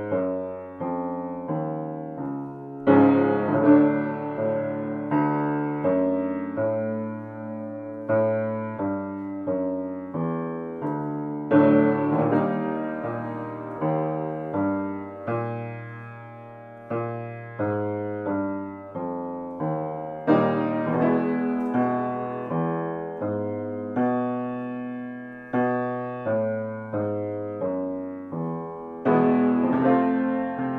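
Grand piano playing a short repeated warm-up pattern of struck notes and chords, each dying away before the next. A louder chord starts each new round about every eight or nine seconds. This is the accompaniment for a bass-baritone vocal exercise.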